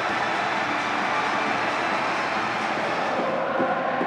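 Football stadium crowd, a steady wash of cheering and noise celebrating the home side's goal.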